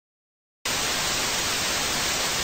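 TV static sound effect: a steady hiss of white noise that cuts in suddenly from silence about half a second in.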